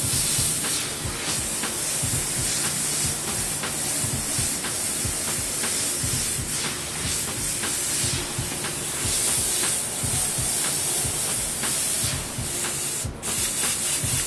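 Airbrush spraying paint onto a T-shirt: a steady hiss of air, with a brief break about a second before the end as the trigger is let off.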